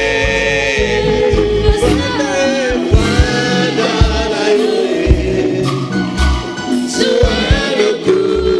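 Gospel worship song: voices singing long held notes over a band, with drum beats underneath.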